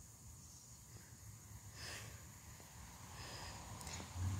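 Quiet outdoor ambience with a faint low rumble, and one soft breath close to the microphone about two seconds in.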